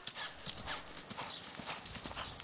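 Faint, soft hoofbeats of a ridden sorrel-and-white Paint Horse mare moving at a steady gait over a dirt arena.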